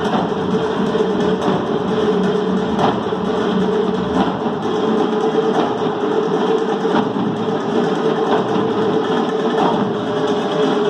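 An ensemble of frame drums and a few cylindrical drums playing a dense, fast Caucasian dance rhythm close to a continuous roll, with a steady sustained tone underneath.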